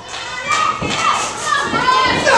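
Ringside spectators, children's high voices prominent, shouting and yelling in a reverberant hall, with a thud or two from the wrestling ring.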